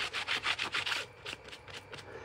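A blue cloth is rubbed briskly back and forth over a red rubber stamp on a clear acrylic block, wiping the leftover ink off it. The scrubbing strokes come about six or seven a second, then thin out and fade about a second in.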